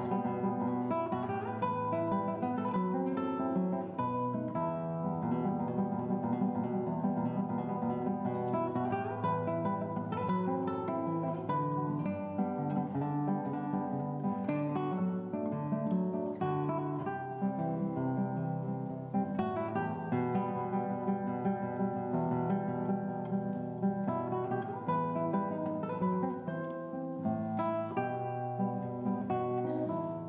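Solo classical guitar played fingerstyle, a continuous line of plucked notes over bass notes.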